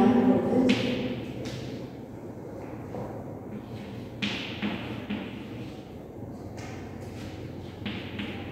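Chalk writing on a chalkboard: irregular taps and short scratchy strokes with gaps between them, as letters are written one by one.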